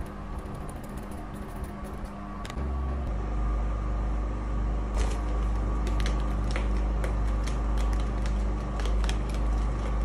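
Pleated paper hand fan waved close to a phone's microphone: from about three seconds in, the air it pushes buffets the mic as a loud low rumble, and the paper pleats flap and click about twice a second.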